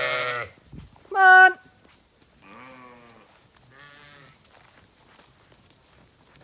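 Zwartbles ewes bleating: a call at the very start, a loud bleat about a second in, then two fainter bleats around the middle.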